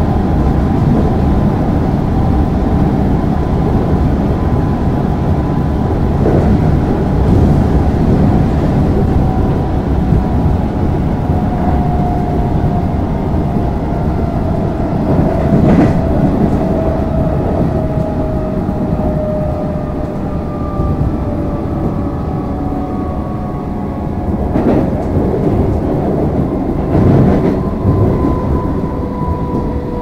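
Cabin noise inside an Alstom Comeng electric suburban train: a steady low rumble of wheels on track, with a motor whine that falls slowly in pitch over the second half as the train slows for a station. Occasional knocks come from the wheels passing over rail joints or points.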